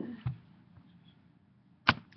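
Low room tone broken by a short dull thud about a quarter second in and a single sharp knock near the end.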